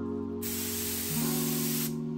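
Gravity-feed HVLP spray gun spraying water-based polyurethane, a steady hiss of air and atomised finish that starts about half a second in and stops briefly near the end as the trigger is released, over background music.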